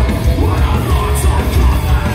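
Metalcore band playing live through a large PA: heavy bass and drums with yelled vocals and cymbal crashes.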